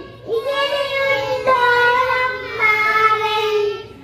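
A group of young children singing a song together, holding long, drawn-out notes, with a brief breath pause just after the start.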